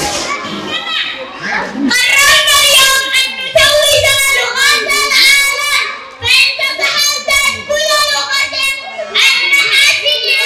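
A group of young children's voices chanting together in unison, starting about two seconds in, in short rhythmic high-pitched phrases.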